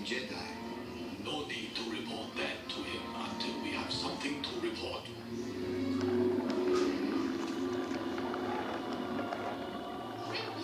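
A film soundtrack playing from a television across a room: dialogue with background music, the music holding a sustained low note through the second half.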